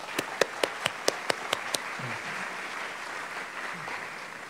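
Audience applauding. A few loud separate claps stand out in the first two seconds, over steady clapping from many hands.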